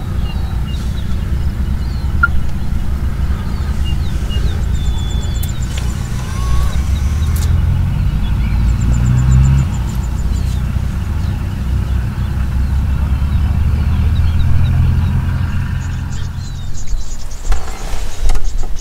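A vehicle engine idling, a steady low rumble, with faint bird chirps above it. Sharp clicks come in near the end.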